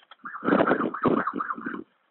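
Emergency vehicle siren in a fast rising-and-falling yelp, heard over a telephone line.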